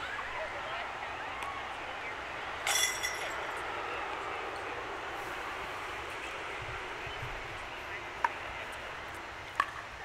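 A disc striking the chains of a disc golf basket about three seconds in: one short metallic jingle as a birdie putt goes in. Under it is a steady outdoor background hiss.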